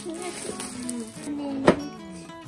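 Plastic shrink-wrap crinkling as it is peeled off a cardboard board game box, with one sharp click near the end, over background music.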